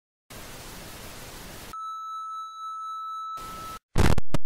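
Electronic static hiss for about a second and a half, then a steady high electronic tone like a test tone or dial tone. A brief burst of hiss returns just before both cut off suddenly.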